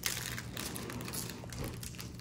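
Crinkly plastic snack wrapper of a pack of burger-shaped cookies being handled and rummaged, an irregular run of crackles and crinkles with a sharp click just at the start.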